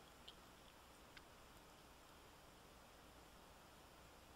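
Near silence: faint room hiss, with two small faint ticks in the first second and a half.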